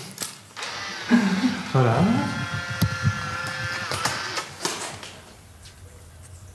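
A woman's voice briefly saying 'voilà', followed by a steady hum made of several level tones for about three seconds, which then fades.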